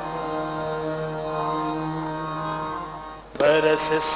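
Sikh kirtan: a harmonium holds steady notes for about three seconds, then a man's singing voice comes in loudly near the end.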